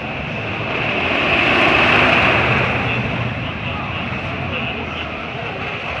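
Wildcat wooden roller coaster train running along its track, swelling to a peak about two seconds in and then easing off, with the voices of people walking by.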